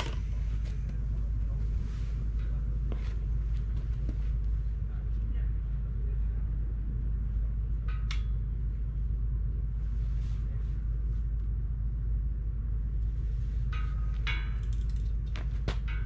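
A steady low rumble, with brief faint voice-like sounds about eight seconds in and again near the end.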